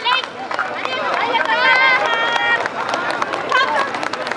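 Voices calling out, some held as long shouts, over crowd chatter and scattered hand-clapping.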